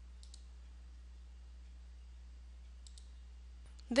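Two faint computer mouse clicks, each a quick double click, one just after the start and one about three seconds in, over a steady low hum.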